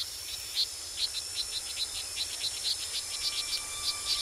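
Rainforest chorus of insects and frogs calling: a steady high whine with many short, high chirps repeating several times a second, joined near the end by a faint steady lower tone.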